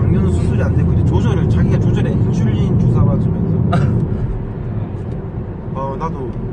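Steady low rumble of a car's road and engine noise heard from inside the cabin while driving, easing a little about four seconds in, with faint voices over it.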